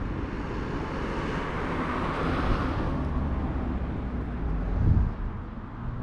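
A car driving past on the road, its tyre and engine noise rising to a peak about two seconds in and then fading away. A low rumble runs underneath, with a short low thump near the end.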